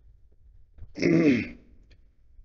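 A man clearing his throat once, briefly, about a second in, the sound falling in pitch.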